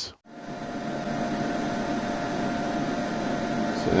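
Cooling fans of an EG4 inverter/charger running at a steady level, an even whirring with a faint constant tone in it, starting a moment in.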